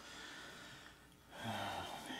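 A man's audible breath, faint at first and louder from about one and a half seconds in.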